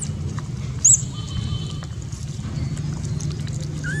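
Macaques foraging: a sharp, high-pitched squeak about a second in, and a short rising-then-falling call near the end, over a steady low hum.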